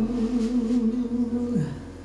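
Live jazz ballad: a female singer holds a low note with a slow vibrato over a soft double-bass line; about one and a half seconds in the note slides down and fades.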